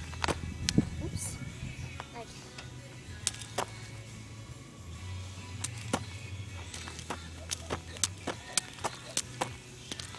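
Jump rope slapping the ground in sharp clicks, scattered at first and then coming about three a second near the end, over a low steady hum.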